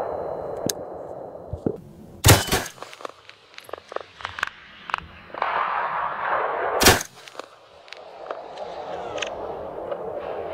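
Two rifle shots about four and a half seconds apart, each a sharp crack with a short ringing tail, and fainter clicks in between.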